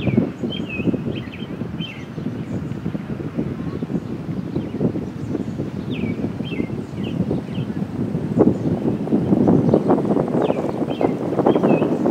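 Wind buffeting the microphone with a loud, gusting rumble that grows stronger in the last few seconds. Over it, a bird sings short chirping phrases three times.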